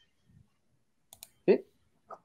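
Two quick computer clicks a little after a second in, followed by a brief rising vocal murmur; otherwise quiet.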